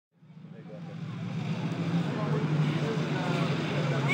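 Outdoor background noise fading in from silence: a steady low rumble, with faint voices from about two seconds in.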